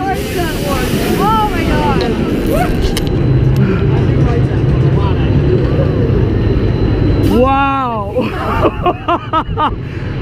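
Steady low rumble of the Top Thrill Dragster coaster train rolling into the station, with riders' faint chatter over it. About seven and a half seconds in, a rider lets out a long drawn-out shout, then laughs.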